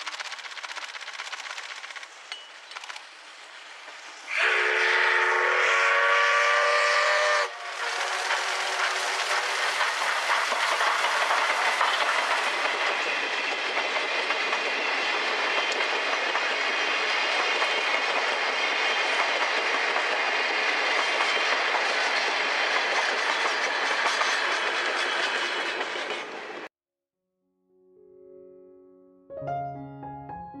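C61 20 steam locomotive sounding its whistle for about three seconds, starting some four seconds in. Then it and its train of coaches pass close by, with a loud continuous rush of exhaust and wheels clattering over the rails that cuts off abruptly near the end.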